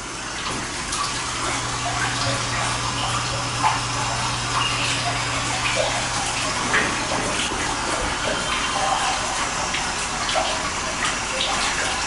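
Steady rush of running water with a constant low hum underneath.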